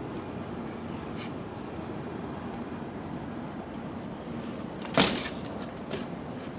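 A BMX bike landing on concrete about five seconds in: a single sharp clack of tyres and frame with a brief rattle after it. Before it there is only a steady low background hum, with a faint click about a second in.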